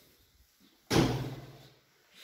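A door bangs once about a second in, its sound fading away over most of a second.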